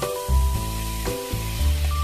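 Enoki mushrooms and imitation crab sticks sizzling in hot cooking oil in a frying pan, a steady hiss that starts abruptly.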